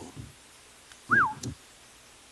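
A man's short, high vocal 'ooh' about a second in, rising then falling in pitch; the rest is quiet room tone.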